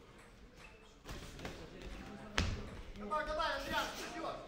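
Boxing gloves landing punches in sparring: a few sharp thuds starting about a second in, the loudest just past halfway.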